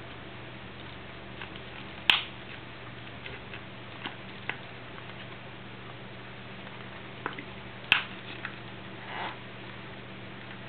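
Soft, thin plastic mold being flexed and squeezed by hand: scattered small clicks and crackles, with two sharper snaps, one about two seconds in and one near eight seconds, and a short rustle near the end, over a steady low hum.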